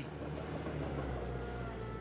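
Engines of heavy demolition machinery running outside the building, a steady low rumble.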